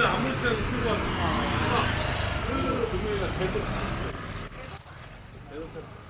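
A motor scooter passes on the street with people talking nearby, and the noise dies away about four seconds in, leaving quieter street ambience.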